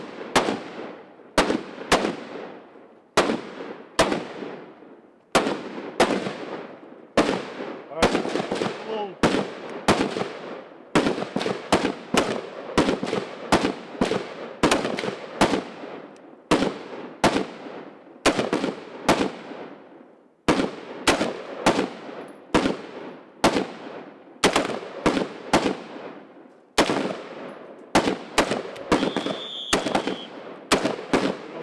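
Semi-automatic rifle fire from M4-style carbines: sharp single shots and quick pairs from more than one shooter, each followed by a fading echo, going on at a steady pace of about one to three shots a second.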